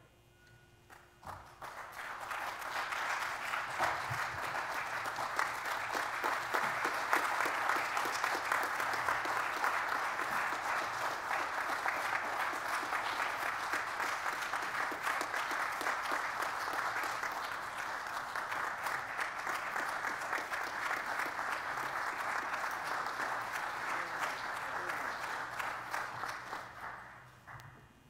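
Audience applauding, a dense steady clapping that swells in about a second and a half in and dies away near the end.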